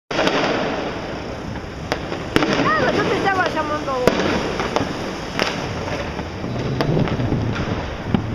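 Fireworks and firecrackers going off across a city: a continuous distant crackle and rumble, with several sharp bangs scattered through it.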